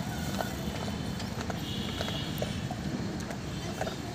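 A child's bicycle rolling over floor tiles, with light irregular clicks and rattles from the bike, over a steady low background rumble.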